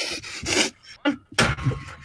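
A young man's breathy laughter in short noisy bursts, heard through a video-chat microphone.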